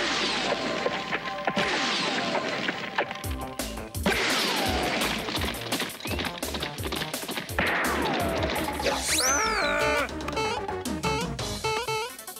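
Cartoon action music with crash and whack sound effects. Bursts of noise with falling whistles come at the start, about a second and a half in, four seconds in and seven and a half seconds in, and a wavering tone slides up and back down near the end.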